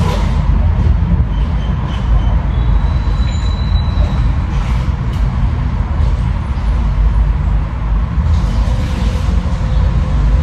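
A loud, steady low rumble with no clear pitch.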